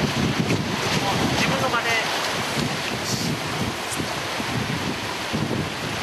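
Wind on the microphone over sea waves washing against shore rocks: a steady rushing noise.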